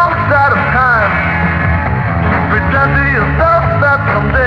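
Blues-rock power trio (guitar, bass and drums) playing an instrumental passage: a lead line of bending, sliding notes over steady bass and drums.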